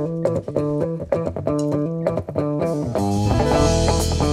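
Live band playing: electric guitar and bass guitar picking a quick, repeating riff. Drums and cymbals come in with a fuller sound about three seconds in.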